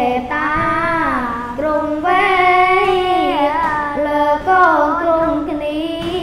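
Two young Buddhist novice monks chanting Khmer smot together, in long held notes that slide slowly up and down in pitch.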